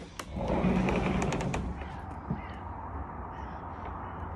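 Metal handle of a uPVC window being worked by hand: a few sharp clicks and rattles over a rustling noise in the first two seconds, followed by a quieter steady background hiss.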